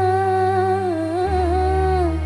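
Female qasidah singer holding a long sung note through the microphone, with a short ornamented turn about halfway, over a steady low electronic keyboard accompaniment that moves to a new chord a little after one second in.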